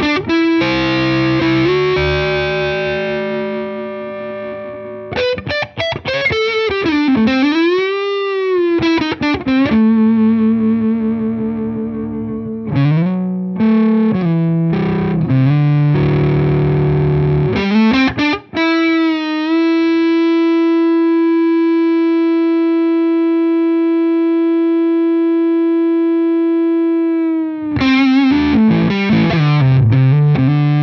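Tokai Love Rock LS128, a Les Paul Standard replica electric guitar, played through a Hamstead combo amp: riffs and single notes, with a wide string bend up and back down about eight seconds in. From about nineteen seconds in, one note is held for about eight seconds, ringing on with long sustain.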